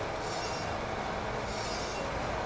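Crankshaft grinder running, its grinding wheel touching off on a spinning crankshaft journal with coolant flowing, a steady even grinding noise.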